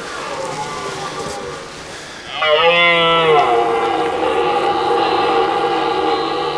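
Red deer stag roaring in the rut: a long, pitched call that starts a couple of seconds in and bends downward in pitch, over background music.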